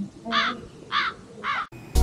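Three crow caws, evenly spaced about half a second apart: a comic crow-caw sound effect added in the edit. Music starts abruptly just before the end.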